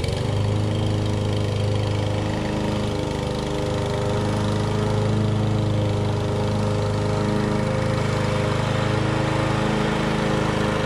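Small lawn mower engine running steadily close by, coming in abruptly at the start and holding an even hum throughout.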